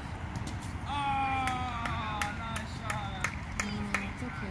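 A high-pitched voice calls out in one long drawn-out shout that falls slightly in pitch, starting about a second in, amid other calling voices; several sharp knocks come in the second half.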